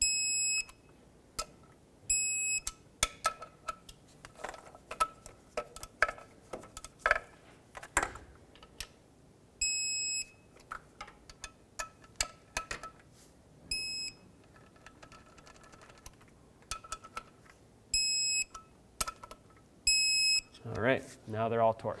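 Electronic torque wrench beeping six times, about half a second each, as each clutch pressure plate bolt reaches its 19 ft-lb setting. Between the beeps come the ratchet head's clicks as it is turned.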